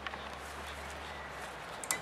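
Steady low hum and hiss of background noise, with one sharp knock near the end.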